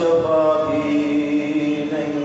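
A man's voice chanting an elegiac recitation, a zikr of Imam Hussain, in long drawn-out notes, holding one steady note for more than a second.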